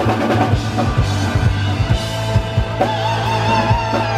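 Live rock band playing: drum kit, bass guitar and electric guitar at full volume, with the bass holding a steady low note under regular drum hits. About three seconds in, a held note with a wavering vibrato rises above the band.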